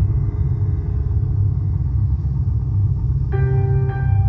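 Slow live instrumental music: a steady low drone from stage piano and cello, with a new keyboard note struck about three seconds in and another just before the end.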